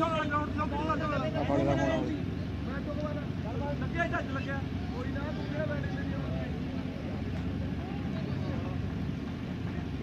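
Faint, indistinct voices of people talking on an open cricket ground, over a steady low hum.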